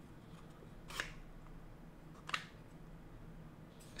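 Two short clicks from the wooden slats of a puzzle box being pushed and shifted by hand, about a second in and again just over a second later, over faint room tone.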